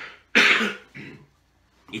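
A man coughing: one loud cough about a third of a second in, followed by a shorter, softer one.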